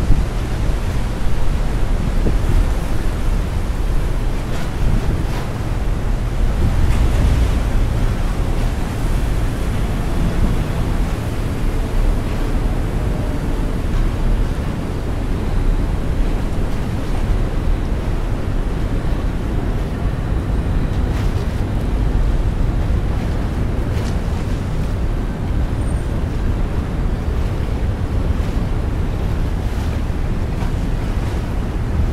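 Choppy river water washing steadily against a pier, with wind blowing on the microphone throughout.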